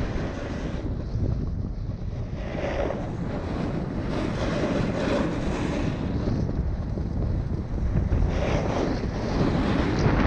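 Wind rushing over the microphone of a camera travelling fast downhill, with the scrape of edges on packed snow swelling and easing three times as the rider turns.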